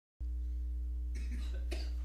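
A steady low electrical hum from a recording setup cuts in just after the start. A soft cough comes about a second in, followed by a short breathy noise.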